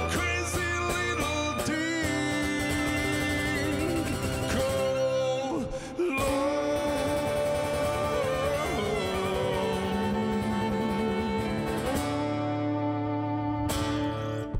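Violin and acoustic guitar playing an instrumental passage: the violin carries the melody in held and sliding notes over strummed guitar chords, with a brief break in the playing about six seconds in.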